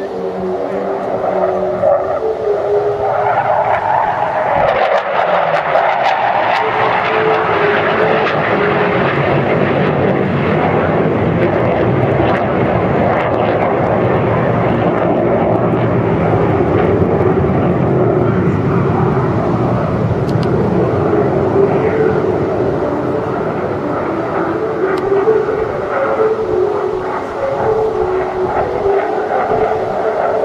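Hawker Hunter F.58A jet flying a display pass overhead, its Rolls-Royce Avon turbojet a loud, continuous rush with a steady droning whine through it. It builds over the first couple of seconds and dips slightly for a stretch late on before rising again.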